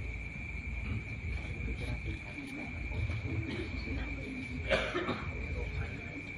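Crickets calling in one steady, high, unbroken trill, over a low rumble, with a short burst of noise about three-quarters of the way through.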